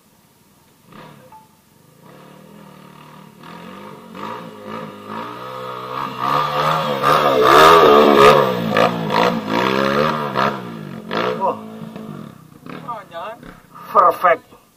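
Dirt bike engine coming up the trail with the throttle rising and falling. It grows louder, is loudest as it passes close about eight seconds in, then fades away.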